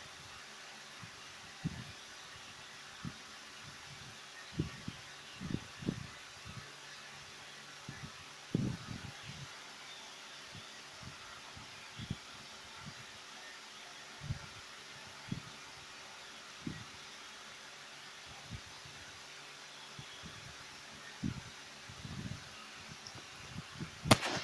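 Quiet steady hiss of a ceiling fan running, broken by irregular soft low thumps: handling bumps on the handheld camera's microphone.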